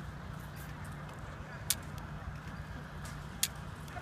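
A handgun on the shooting table going off twice with short, sharp cracks, the first about one and a half seconds in and the second near three and a half seconds. They are far too quiet for live fire, which fits a training pistol being fired in time with the shooter's trigger pulls.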